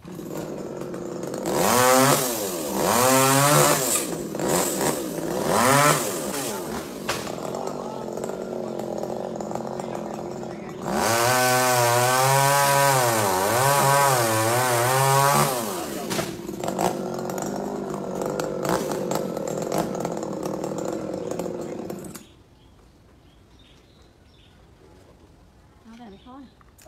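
Chainsaw engine running and revving up and down in surges as it cuts into tree limbs, then cutting off suddenly near the end.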